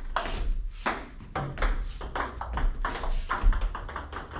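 Table tennis balls clicking in a quick, irregular run during a multiball drill, about two or three a second. The clicks are the celluloid-type balls bouncing on the table and being struck by rubber-faced rackets.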